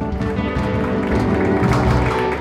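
Live rock band with drums, electric guitar, bass and keyboard playing the closing bars of a song, growing louder and then cutting off at the very end on a final hit.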